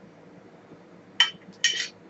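Laboratory glassware clinking, glass on glass: two sharp clinks about half a second apart, the second a little longer and ringing.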